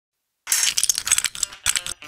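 Rapid clatter of plastic toy bricks clicking and snapping together, starting about half a second in as a quick string of sharp clicks.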